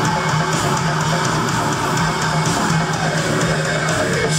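Live heavy metal band playing: distorted, low-tuned eight-string electric guitars and a drum kit, dense and continuous at a steady loudness.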